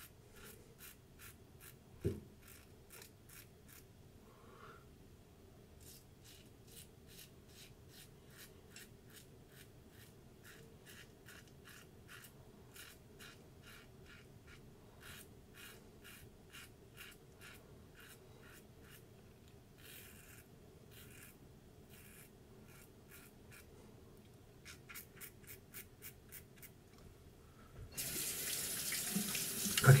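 Double-edge safety razor scraping through lathered stubble in runs of short, quick strokes, several a second, on an against-the-grain pass, with one sharp knock about two seconds in. Near the end a bathroom faucet is turned on and runs into the sink.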